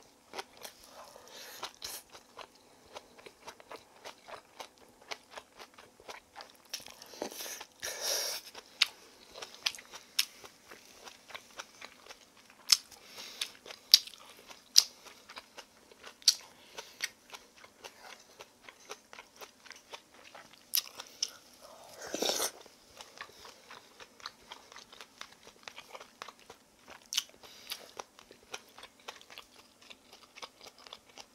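Close-miked eating: chewing and crunching mouthfuls of vegetable bibimbap, with many small mouth clicks and sharp spikes. There are two longer, louder mouth sounds, one about eight seconds in and one about twenty-two seconds in, as broth is sipped from a wooden spoon.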